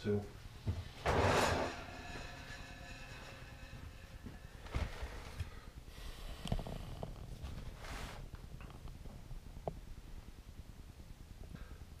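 A plastic storage bin being slid off a wire shelf and carried to a bench. A scraping slide comes about a second in, followed by quieter handling knocks and rustles.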